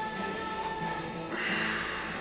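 Background music with steady held notes. About a second and a half in comes a short, breathy intake or puff of air through the nose, a person sniffing a glass of beer for its aroma.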